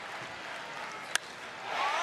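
Ballpark crowd noise on a TV broadcast, with a single sharp crack of a bat hitting the ball about a second in; the crowd grows louder near the end.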